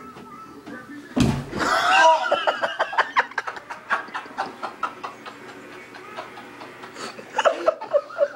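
Young men roughhousing on a hotel bed: a heavy thud about a second in, a shout, then a long run of laughter.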